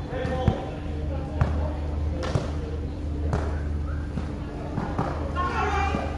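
Basketball dribbled on a plastic-tile court, a few sharp bounces about a second apart, with players' voices calling out over a steady low hum.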